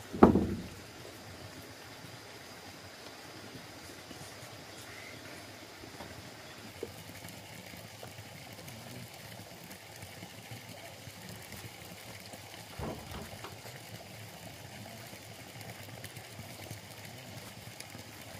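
Faint steady outdoor background noise, with a loud, short low thump just after the start and a softer thump about 13 seconds in.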